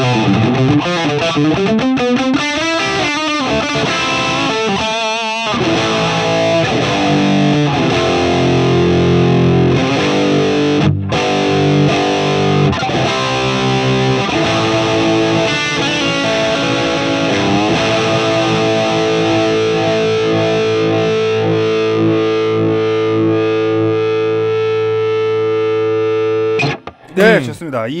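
Electric guitar driven by an Ibanez TS9 Tube Screamer into a Marshall JCM800 2203 amp, playing an overdriven lead with bent and vibrato notes. The tone is creamy, with the mids and lows boosted. It ends on a long held chord that is cut off near the end.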